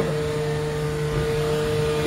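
A steady machine hum with a held midrange tone that keeps an even level throughout.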